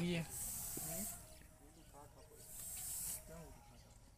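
Paint spray gun fed by an air compressor, triggered in two short bursts of compressed-air hiss, each under a second long, about two seconds apart.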